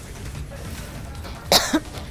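A single short, sharp cough about a second and a half in, over a low steady background hum.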